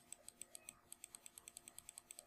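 Computer mouse clicking quickly and evenly on the spinner arrows of an indent setting, about eight faint, sharp clicks a second.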